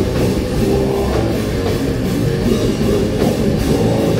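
A live rock band playing loud and without a break: distorted electric guitar and bass guitar over a full drum kit.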